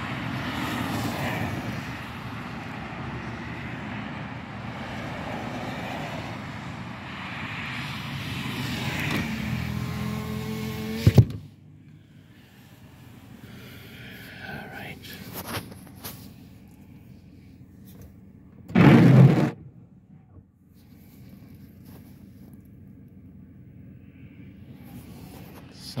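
Car road and wind noise while the car is moving, with a rising whine and a sharp clunk about eleven seconds in, like a power window closing; after that the cabin is much quieter while the car sits at the light. One short, loud sound of about a second comes near the nineteen-second mark.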